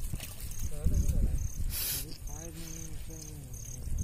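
Insects chirping steadily at night, about two to three short high chirps a second, under a low voice and the splash and rustle of a wet fishing net being hauled into a boat, with a short hissing splash just before the middle.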